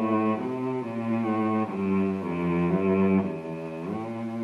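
Orchestral music led by low bowed strings, playing held notes that step to a new pitch about every half second and slide upward near the end.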